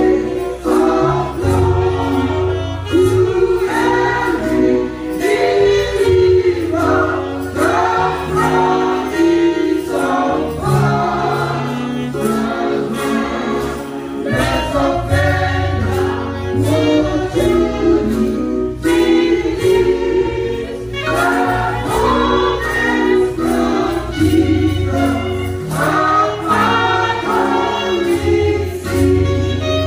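Gospel choir singing with instrumental accompaniment: sustained bass notes under the voices and a steady beat.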